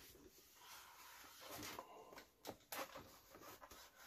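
Faint scraping of a rotary cutter being run through four-ounce leather on a cutting mat, recutting a line that did not cut through, with a few short sharp clicks.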